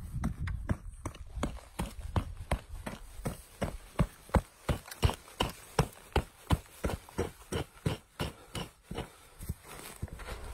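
A small hand digging hammer chopping into packed soil to dig out a trap bed: a steady run of dull strikes, about two or three a second, stopping just before the end.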